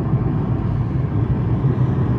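Steady low rumble of road and engine noise inside a moving car at speed.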